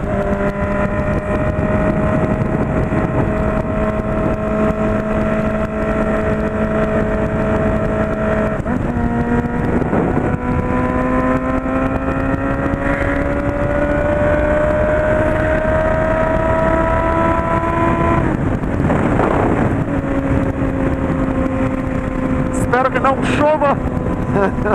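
Honda CB600F Hornet's inline-four engine running at highway speed, heard from on the bike over wind and road noise. Its pitch holds steady for the first several seconds, climbs slowly from about ten seconds in, then drops about eighteen seconds in.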